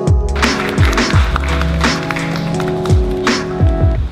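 Background music with a steady beat: deep bass kicks that drop in pitch, held bass notes and sharp snare-like hits.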